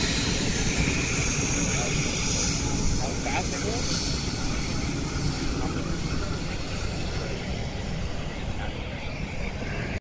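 Twin rear-mounted turbofan engines of a business jet running as it moves off down the runway, a broad jet noise that slowly fades as the aircraft draws away.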